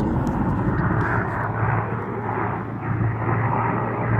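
Steady hum of a military helicopter's engine and rotor, running continuously with a rushing noise over it.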